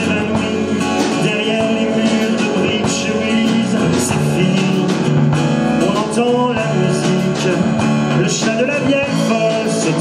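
A small band playing live: strummed acoustic guitars over a drum kit, with a melody line carried at the lead microphone.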